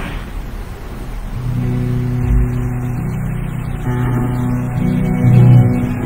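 A worship band's instrumental intro begins: after a moment of room sound, sustained low chords come in about a second and a half in, fuller from about four seconds, with a short low thump a little after two seconds.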